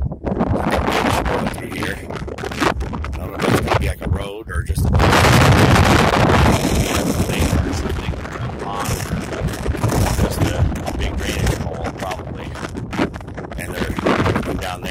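Wind buffeting a phone's microphone in gusts, with a louder rush of noise for a few seconds midway.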